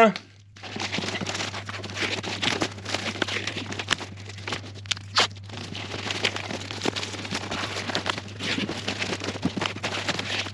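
Duct tape being pulled off the roll and wrapped around the joint between flexible aluminium foil ducting and a 150 mm inline fan spigot, with the foil duct crinkling under the hands. It is a continuous rasping with many small crackles and clicks, starting about half a second in.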